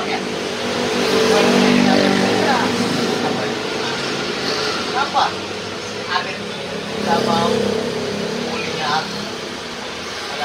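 Road traffic going by: an engine hum that swells as a vehicle passes between about one and three seconds in and again around seven seconds, with bits of men's talk over it.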